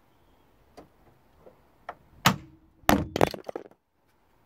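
VW Golf Mk5 bonnet catch releasing and the bonnet springing up, throwing off the long screwdriver held in the catch. A few faint clicks lead to a loud metallic clunk with a brief ring about halfway through, followed by a quick run of loud knocks and rattles as the screwdriver clatters away. The sound cuts off abruptly near the end.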